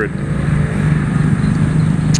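A steady low engine hum.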